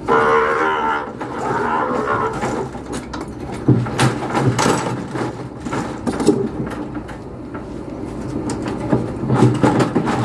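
A weaned calf bawling twice in the first couple of seconds, from inside a wooden cattle squeeze chute, followed by a few sharp knocks from the chute's gates and levers.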